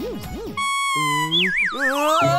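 Cartoon energy-beam sound effect: a warbling electronic tone, then a buzzy tone that wobbles and falls in pitch through the second half.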